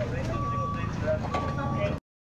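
Voices of people talking, over a low engine running and a steady high electronic beep that comes in half-second spells about once a second, like a vehicle's warning beeper. Everything cuts off suddenly at the end.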